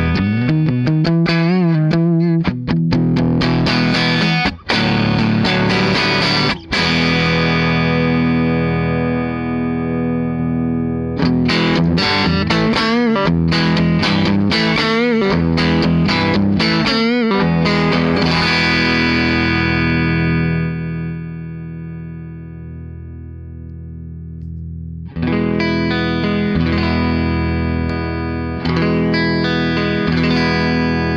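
Electric guitar played through a Barber Linden Equalizer pedal with an overdriven tone: chords and lead lines with bent, wavering notes. Past the middle a held chord rings and fades for several seconds before the playing picks up again near the end.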